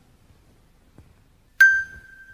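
Near silence, then about one and a half seconds in a single bright chime note is struck and keeps ringing.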